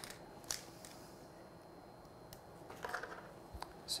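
Faint handling sounds of dental floss being tied onto a small plastic floss handle: a few soft clicks and rustles.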